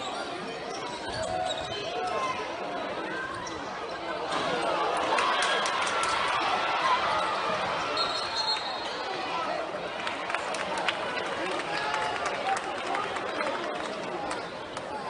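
Indoor basketball game sound: many voices from the crowd and players chattering over a ball bouncing on the hardwood court, with sharp knocks scattered through. The crowd noise swells from about four seconds in.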